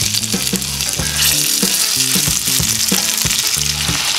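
Masala-marinated fish pieces frying in hot oil in a pan, a steady sizzle as more pieces are laid in.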